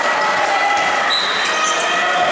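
Indoor handball game: a handball bouncing on the wooden court amid players' footsteps and voices, echoing in a large sports hall.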